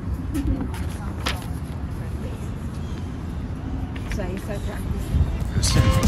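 Low, uneven outdoor rumble with faint voices in the background; background music with sustained notes comes in near the end.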